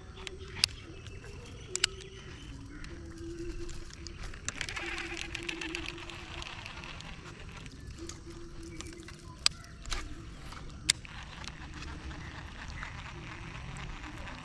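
Quiet waterside ambience with birds calling and chirring from the trees: a few faint, short, low-pitched calls, and a busier high chirring patch about a third of the way in. A handful of sharp single clicks or knocks are spread through it.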